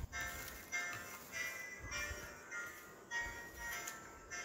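Tinny electronic melody from a small sound chip built into the gift, playing a slow tune of single held notes, about one or two a second.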